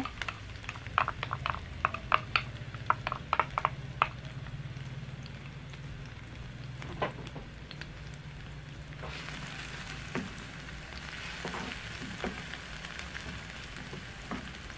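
Chopped onion and crushed garlic frying in olive oil in a nonstick frying pan. A wooden spoon taps and scrapes in quick clicks for the first few seconds, and the sizzle grows stronger about nine seconds in.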